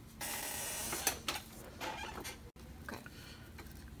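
Handling noise from a stone dental cast being lifted off a paper-covered bench and turned in the hand: about a second of scraping and rustling, then a few light clicks and knocks.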